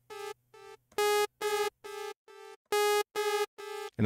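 Arturia Pigments software synthesizer playing a sawtooth note through its PS Delay (pitch-shifting delay) effect. Each short note is followed by a few fainter echoes at the same pitch, and the note is struck again about every second and a half.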